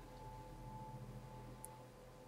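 Faint steady hum of room tone, with one tiny high tick about one and a half seconds in.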